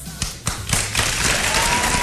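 Studio audience applause, starting about half a second in and building to a steady, dense clapping. A held high tone comes in partway through.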